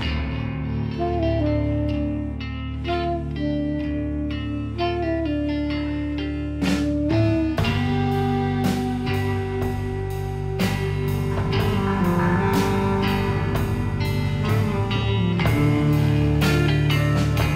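Live rock band playing an instrumental passage: electric guitars over a steady bass line. The drum kit comes in about seven seconds in with a regular beat, and the music grows fuller.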